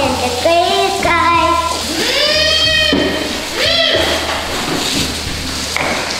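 A young child's high voice making wordless drawn-out sounds that rise and fall, with two long calls in the middle.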